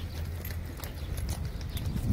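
Footsteps on a brick-paved walkway: a run of short, irregular clicks over a low steady rumble.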